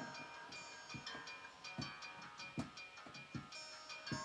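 Quiet instrumental backing music in a pause between sung lines: held chords with a light chiming note struck about once a second.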